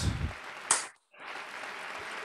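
A man clapping his hands in applause, one sharp clap standing out near the start. The sound cuts out for a moment about a second in, then a faint even hiss follows.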